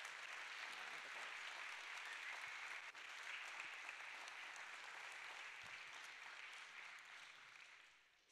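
A church congregation applauding steadily, dying away near the end.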